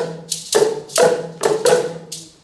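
Tuned plastic Boomwhacker tubes struck against the floor in an ensemble rhythm, pitched hits landing about every half second. A shaker hisses between the hits.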